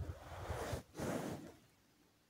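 Liquid sloshing in a plastic bowl as it is stirred, two swishes a little under a second apart with light knocks of the utensil against the plastic.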